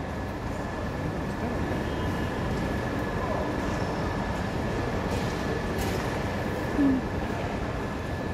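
Steady background hum of a large airport terminal hall, with a thin, steady high-pitched whine running under it. A brief, louder sound near the end.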